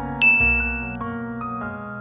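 A single bright chime sound effect strikes about a quarter of a second in and rings for under a second, marking the switch to the next question, over soft background piano music.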